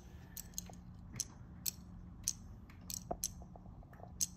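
A dozen or so light, scattered clicks and taps as small clear plastic cases of Mexican jumping beans are handled on a wooden table.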